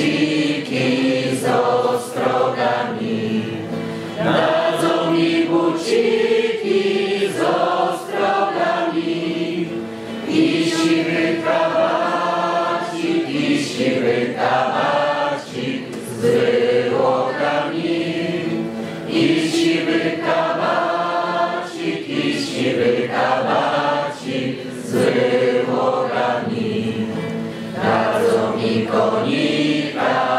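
A group of voices singing a song together in held, phrased notes.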